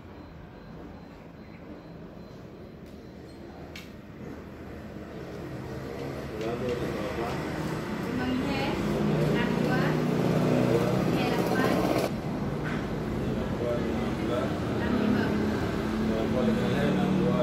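Indistinct voices over a steady low rumble, growing louder from about halfway through, with a couple of sharp clicks.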